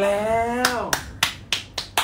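Two people clapping their hands, starting about half a second in, at about four claps a second.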